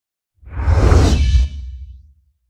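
TV channel logo sting: a whoosh over a deep rumble that swells in about half a second in, stays loud for about a second, then fades away near the end.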